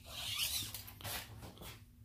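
Steel tape measure blade being pulled out of its case: a rasping noise for about a second and a half, fading before the end.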